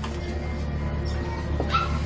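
A short, high cry from a small pet animal near the end, over steady background music.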